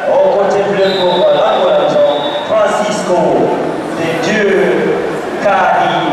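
A man's voice speaking almost without pause, with a thin steady high tone held for about a second and a half starting about a second in.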